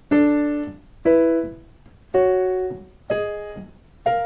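Piano playing perfect fifths, both notes struck together, stepping up the whole-tone scale: four fifths about a second apart, each left to ring and fade before the next.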